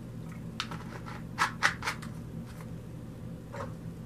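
A person taking a quick drink: a handful of short, soft sips and swallows between about half a second and two seconds in, then one brief handling noise near the end, over a low steady hum.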